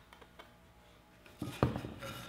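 Quiet handling for the first second and a half, then a few knocks, the loudest about one and a half seconds in: a plastic glue bottle set down on an MDF work table beside white wooden frame molding.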